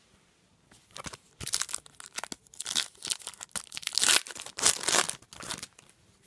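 Garbage Pail Kids Chrome trading cards being handled by hand: a run of quick rustling, crinkling noises that starts about a second in and lasts about five seconds.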